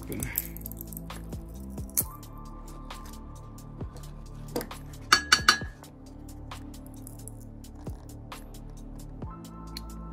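Pliers clicking and clinking against a small metal-plated BGA chip as it is pried and cracked open, with a quick run of sharp metallic clinks about five seconds in. Steady background music plays throughout.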